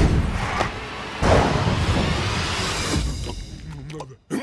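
Film soundtrack of action music mixed with sound-effect booms and whooshes: a heavy hit at the start and another about a second in, then the sound thins out near the end.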